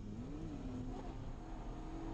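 Nissan 240SX drift car's engine heard from inside the cabin during a drift run: the engine note rises briefly about half a second in, dips, then holds roughly steady over a low rumble.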